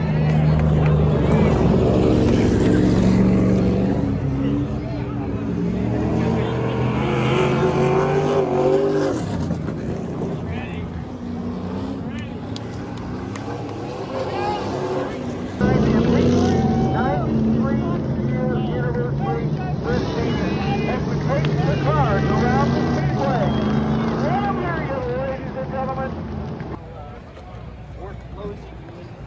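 Race cars running on a dirt oval, their engines droning and rising and falling in pitch as they come round and pass. The engine sound fades, swells back up suddenly about halfway through, and drops away near the end, with people's voices mixed in.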